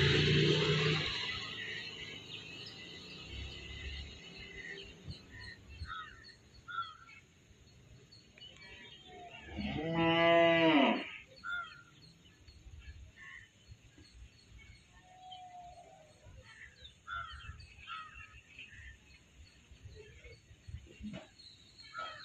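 A cow moos once, about halfway through, in a single call of about a second and a half, the loudest sound here. Around it, small chicks peep faintly. A louder rush of noise fades out over the first couple of seconds.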